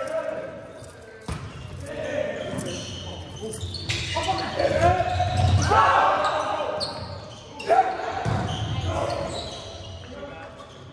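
Volleyball serve and rally in an echoing gymnasium: sharp hand-on-ball hits, the first about a second in and the loudest near eight seconds, amid players' and spectators' shouts and calls.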